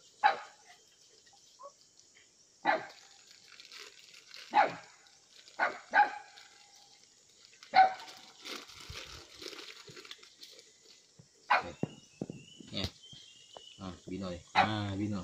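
Mongrel dogs giving short, sharp single barks, about eight of them spaced unevenly, as they are hand-fed.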